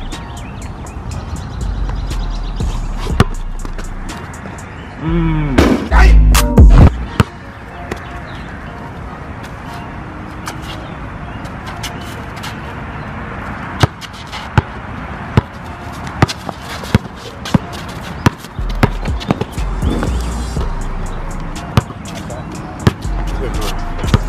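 A basketball is dribbled on an outdoor asphalt court, with a quick run of sharp bounces in the second half, over background music with a deep bass beat. A brief, very loud vocal outburst comes about five seconds in.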